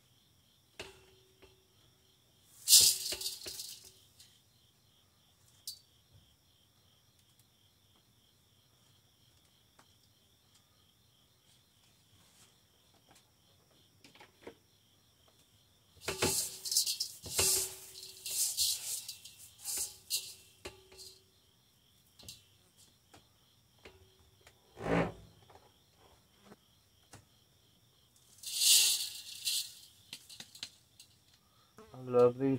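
Partly dried chaste tree (vitex) berries rattling as they are tipped and brushed off plastic dehydrator trays into a stainless steel bowl. The rattling comes in bursts: a short one a few seconds in, a longer run in the middle, and another near the end, with a single knock a few seconds before the end.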